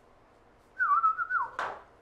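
A short whistled note, wavering and then falling in pitch, lasting under a second. It is followed near the end by brief brushing strokes on a chalkboard.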